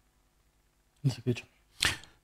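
Near silence for about a second, then a man's voice in a few brief fragments, and a short breathy hiss near the end.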